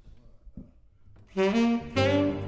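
Quiet room for about a second and a half, then a tenor saxophone and a Yamaha grand piano start playing jazz together, loud and sudden.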